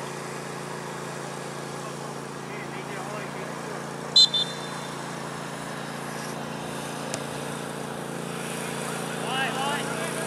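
Referee's pea whistle blown in one short, sharp double blast about four seconds in, the loudest sound here, signalling a free kick to be taken. Under it runs a steady low hum, and players shout near the end.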